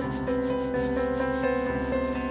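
A drumstick scraped rhythmically across a snare drum head in quick, even strokes, over repeated, sustained piano notes in a live jazz performance.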